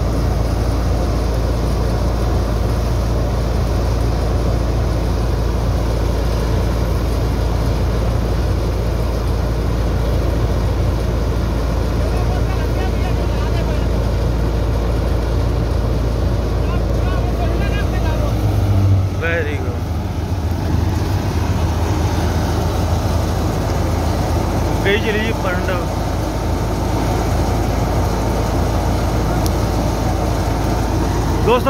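Large tractor-driven wheat thresher running steadily under load as wheat bundles are fed in, together with the Massey Ferguson 260 tractor powering it: a continuous loud mechanical drone. Its low hum changes briefly about two-thirds of the way through.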